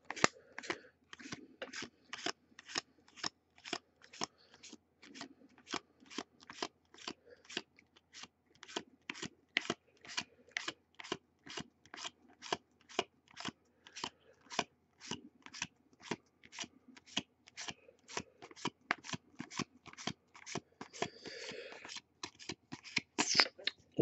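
Baseball trading cards being flipped one at a time off a stack in the hands, each card giving a short sharp snap in a steady rhythm of about two to three a second, with a longer rustle near the end.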